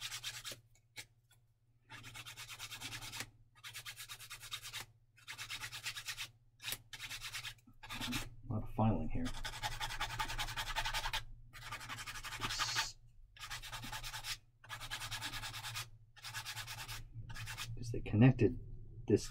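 Hand-sanding strokes on a small plastic model-kit part, one after another, each about a second long with short pauses between, to clean off moulding flash.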